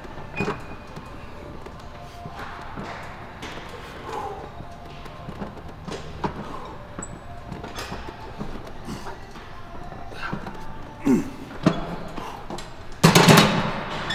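Faint background music over gym room tone during a set of barbell spider curls, with a few small knocks. Near the end comes one loud thud as the weighted barbell is set down.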